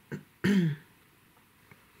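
A woman clearing her throat once, briefly, about half a second in.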